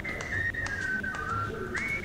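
A person whistling a tune: a clear note slides up to a held high pitch, steps down through a few slower notes, then slides back up near the end.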